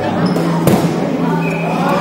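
A dodgeball strikes once, a sharp smack about two-thirds of a second in, over players' voices in the hall.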